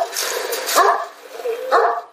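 A Sivas Kangal dog barking, three barks about a second apart.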